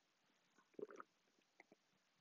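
Faint sounds of a person drinking from a chalice: a brief swallowing sound about a second in, followed by two small clicks.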